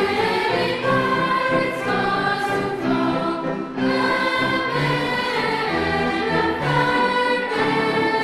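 Background music: a choir singing.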